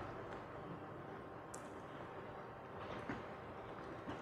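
Quiet room tone with a few faint, short clicks of laptop keys being typed.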